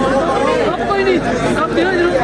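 Crowd chatter: many men talking at once in a loud, steady babble of overlapping voices.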